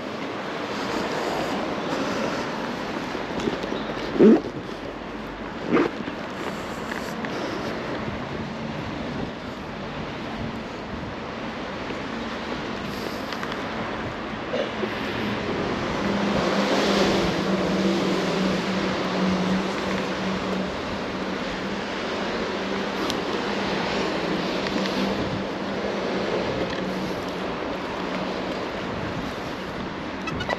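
Steady outdoor traffic and background noise in a wet car park, with two brief sharp sounds a few seconds in. A steady low hum joins about halfway through.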